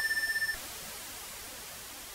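Roland JX-10 synthesizer, fitted with the JX10se upgrade, holding a high note: a steady tone with overtones that, about half a second in, gives way to a quieter, steady hiss as the second oscillator's waveform is set to noise.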